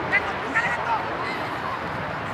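Short distant shouts from players on a soccer field, the loudest just after the start, over a steady background hiss of outdoor noise.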